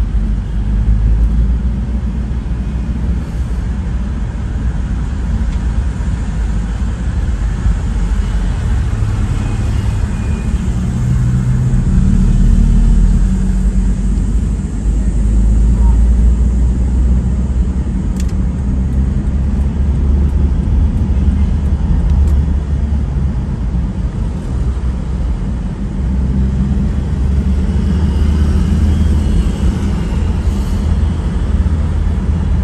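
Steady low rumble of a car driving through city traffic: engine and tyre noise that swells slightly now and then with speed.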